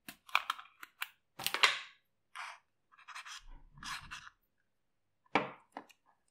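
Irregular clicks, taps and brief scraping rustles from handling a small plastic pot of gel food colouring and a paintbrush working the colour into cornstarch dough in a plastic tub, loudest a little over a second in.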